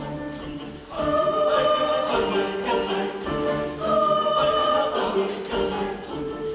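Mixed-voice youth choir singing an Ecuadorian folk song in held, sustained phrases. After a brief dip the voices come in louder and fuller about a second in.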